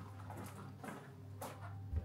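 Quiet room tone with a steady low hum, a few faint rustles of movement, and a soft low thump near the end.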